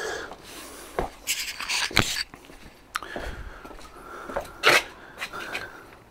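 Spray bottle squirting cleaner onto a leather car seat in a few short hissing sprays, with sharp clicks and handling knocks between them.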